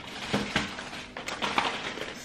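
Hands rummaging through a cluttered drawer of packets and items: scattered rustles, light knocks and clicks as things are moved about.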